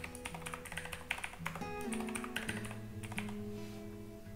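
Computer keyboard keystrokes, a run of irregular clicks as a password is typed, over soft background music with long held notes.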